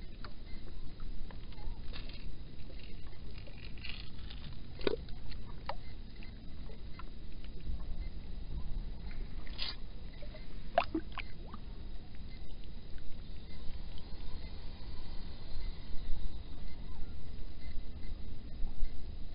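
Water sloshing and lightly splashing at a kayak's side as a catfish is held in the river and released, with a few sharp clicks and drips over a steady low rumble.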